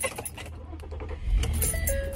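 Low steady rumble of a car heard inside its cabin, swelling briefly a little past halfway, with faint music underneath.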